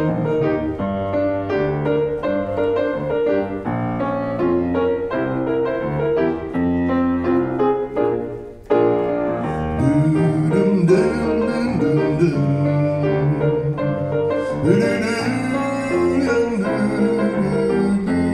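Grand piano playing a slow song accompaniment, alone for the first half. After a brief dip in level about halfway through, a man's singing voice joins the piano.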